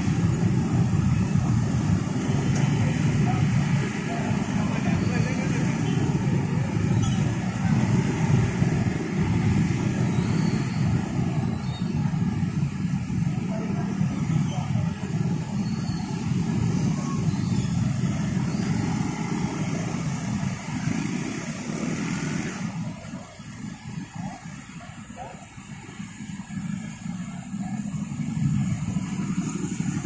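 Many small motorcycle and scooter engines running and pulling away together in dense, slow traffic. The noise drops off suddenly a little over twenty seconds in as the bunch thins out, then builds again near the end.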